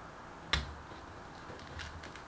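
A sharp click about half a second in, then a few faint short scrapes as a small metal spoon works over a peach's skin.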